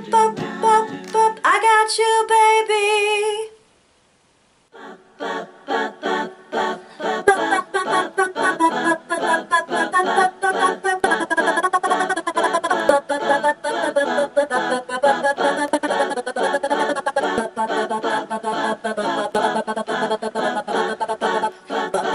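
A lone female voice singing a cappella backing parts in short staccato syllables, with a quick upward slide into a held note that cuts off after about three and a half seconds. After a second of silence comes a long, dense run of rapid, clipped sung syllables: her part-recording played back sped-up in fast forward.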